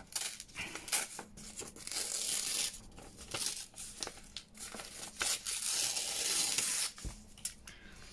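Paper being torn by hand into a strip with a rough, deckled edge, in two long tears with small rustles and taps of handling between them.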